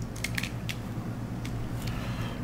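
A handful of light, irregular clicks from computer keys or a mouse while working in animation software, over a steady low hum.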